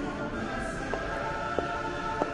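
Music with held, choir-like sung chords, and a few sharp clicks about every half second, fitting high heels striking the wooden stage floor.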